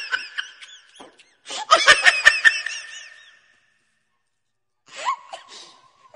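Laughter in a burst about one and a half seconds in, dying away into a dead-silent gap, then a few short sounds near the end.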